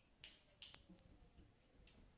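Near silence with a few faint, short taps and clicks, about five in two seconds, from cats scrambling and landing on a sofa and a side table.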